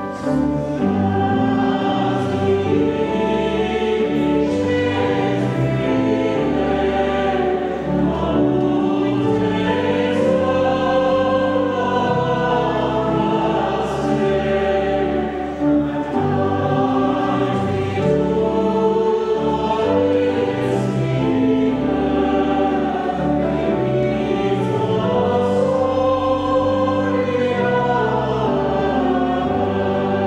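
Church choir singing with pipe organ accompaniment: sustained sung lines over steady low organ notes, continuous throughout.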